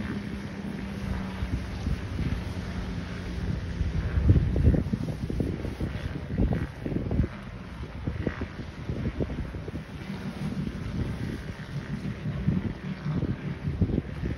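Wind buffeting the phone's microphone in irregular gusts, loudest about four to five seconds in, over the steady low drone of a jet ski engine out on the water.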